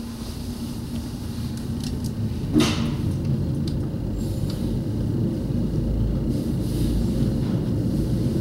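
Aerial ropeway cabin travelling down its cable: a steady low rumble that slowly grows louder, with a single sharp clack about two and a half seconds in.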